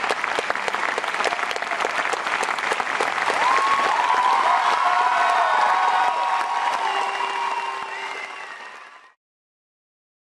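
Audience applauding, with cheering voices rising over the clapping in the middle; the sound fades and cuts off about nine seconds in.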